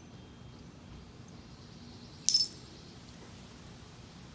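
A single short, bright clink of a hard object being knocked, about two seconds in, with a brief high ring.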